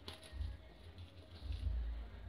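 Scissors cutting through a kite's paper sail along the glued string: a faint snip-click right at the start and a few softer ticks after it, over a low rumble that swells near the end.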